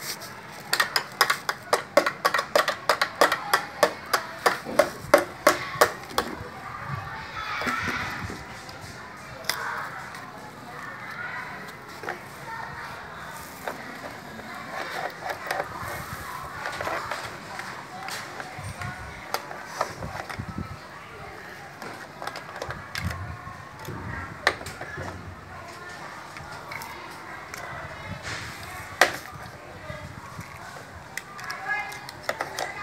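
A plastic toy hammer tapping rapidly on a child's tricycle, about three quick knocks a second for the first six seconds. After that come softer scraping and handling of plastic toy tools with an occasional single knock.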